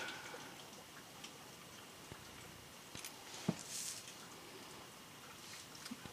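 Faint handling sounds of a paper die-cut being positioned with metal tweezers on cardstock: a few light clicks about halfway through, then a brief rustle.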